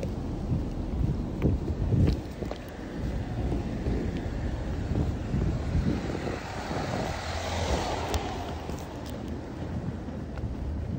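Outdoor street noise with wind rumbling on the microphone, a few thumps in the first couple of seconds, and a passing vehicle that swells and fades between about six and nine seconds in.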